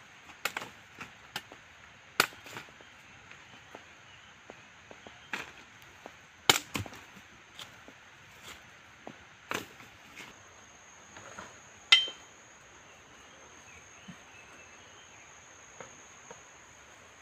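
Machete chopping through jungle vines and brush: irregular sharp chops, the loudest about halfway through and near three-quarters of the way, over a steady high insect drone.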